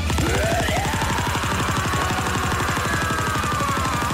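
Cartoon punch-barrage sound effect: a rapid, even stream of hits, about a dozen or more a second, with a long pitched sound that rises in the first second and then slowly falls.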